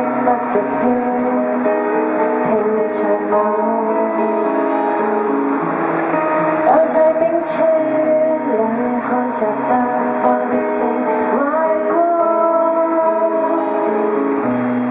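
A woman singing live with her own acoustic guitar accompaniment, holding long notes over the steady guitar.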